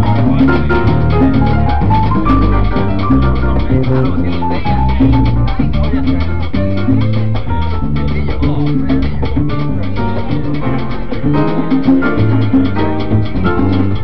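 Live salsa band playing an uptempo number: congas and timbales keeping a dense, steady rhythm over electric bass, with repeating piano figures. The upper figures thin out for a few seconds in the middle, leaving mostly percussion and bass, then come back.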